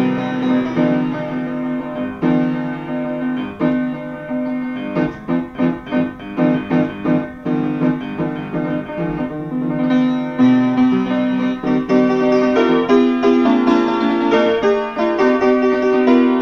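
Small upright piano played with both hands: chords held under a melody, a stretch of short repeated chords in the middle, then fuller sustained chords.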